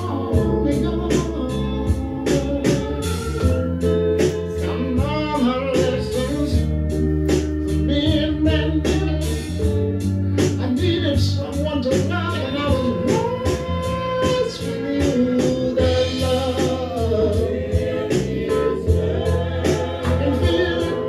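A man singing a soul-style song into a microphone over backing music with a steady beat.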